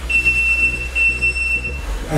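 Electronic gym round timer sounding one long, steady high beep of nearly two seconds, the signal that ends a timed sparring round.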